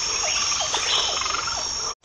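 Recorded nature ambience of calling frogs and insects: a steady high trill under short repeated calls, cut off abruptly near the end.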